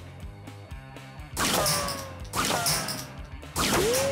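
Three sharp whooshing hits about a second apart, each trailing a sliding, mostly falling tone, as checker pieces are knocked out of the middle of a stack with a flat paint stirring stick. Background music plays under them.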